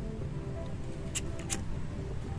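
Two short, sharp clicks about a second apart, from a green disposable lighter being struck to light it, over steady background music.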